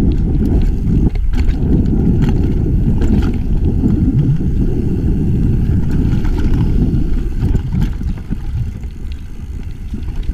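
Wind rushing over an action camera's microphone, mixed with the rumble of mountain bike tyres rolling fast over dirt and rock, with scattered short rattles and knocks from the bike. The sound eases off a little near the end.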